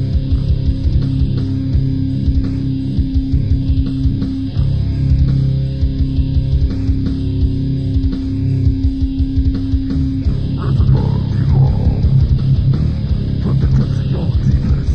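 Instrumental passage of a grindcore band's demo recording: bass guitar and guitar over a busy, driving low rhythm, with a held note that stops about ten seconds in, after which the sound gets denser and harsher.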